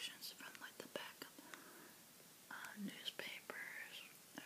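Soft, close-miked whispering broken by sharp wet mouth clicks from chewing bubble gum.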